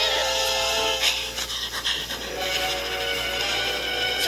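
Cartoon soundtrack playing from a TV speaker: music with a dog's panting sound effect.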